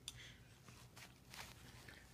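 Near silence: room tone with a steady low hum and a few faint small clicks, one right at the start and one about one and a half seconds in.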